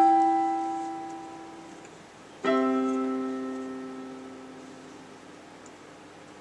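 Digital piano keyboard played four hands with a piano voice: a chord rings from the start and a second chord is struck about two and a half seconds in, each held and left to fade slowly. These are the closing chords of the piece.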